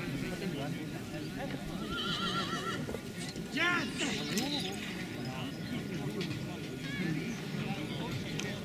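A draft horse whinnying: a quavering call about two seconds in, then a louder wavering burst of it around three and a half seconds, over the murmur of people talking.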